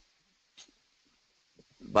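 A pause in speech: near silence with a faint steady hiss and a couple of tiny clicks, then a man starts speaking near the end.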